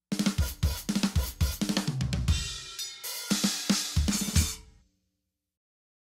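Drum kit playing a short, busy passage: bass drum, snare and hi-hat hits with cymbal crashes building through the last second and a half, then dying away about five seconds in.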